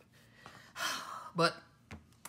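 A woman's quick, audible in-breath lasting about half a second, followed at once by a short spoken word.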